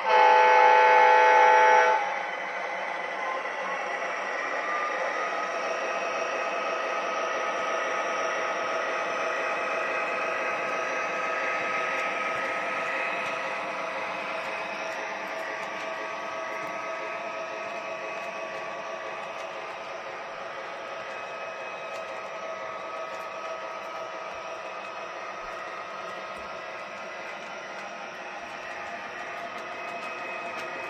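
Model GE Evolution Hybrid diesel locomotive's onboard sound system giving one horn blast of about two seconds. It is followed by the locomotive's running sound and the train rolling steadily along the track as the freight cars pass, a little quieter in the second half.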